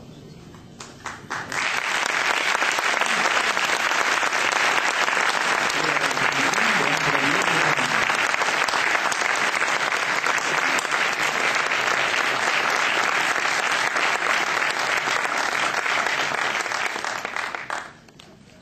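Audience applauding: a few scattered claps, then sustained applause from about a second and a half in that stops shortly before the end.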